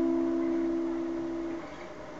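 Acoustic guitar chord ringing out and slowly fading, then cut off about one and a half seconds in, leaving a short pause.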